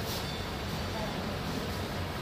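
Steady background noise, heaviest in the low range, with faint indistinct voices.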